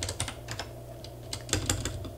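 Typing on a computer keyboard: a few keystrokes at the start, a pause of about a second, then another quick run of keystrokes.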